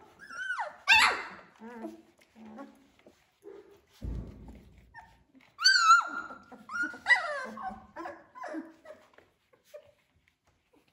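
Three-week-old Labradoodle puppies yipping and whining at play, in bursts of high calls that slide up and down in pitch. The loudest bursts come about a second in and again around six to seven seconds in. A soft low thud sounds about four seconds in.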